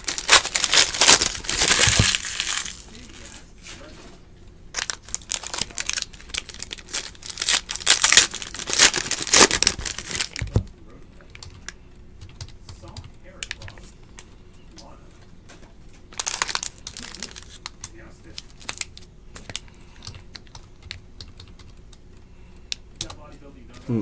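Foil trading-card pack wrappers crinkling and tearing as packs are ripped open, in three loud bursts. Between them come quieter stretches of light clicking as the cards are handled.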